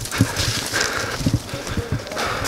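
A man breathing hard and panting, out of breath from climbing uphill.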